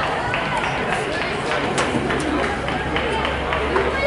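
Indistinct voices of many people talking in a large, echoing indoor sports hall, with a few short sharp clicks among them.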